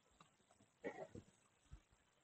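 Near silence: room tone, with one brief faint vocal sound from the narrator about a second in and a soft knock shortly after.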